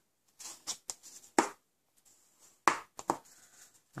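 Bone folder run along the fold of a card-stock card base to burnish the crease: a handful of short scraping strokes, the loudest about a second and a half and about two and a half seconds in.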